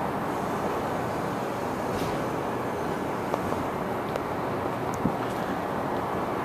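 A steady, even rushing hum of background noise, with a few faint ticks.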